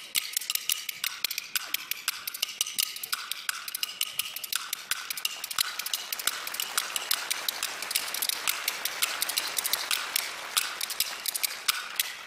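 Two performers playing Chinese bamboo clappers (kuaiban) together: a fast, dense clatter of sharp wooden clicks that grows thicker and busier from about the middle. The two are trying to strike in unison.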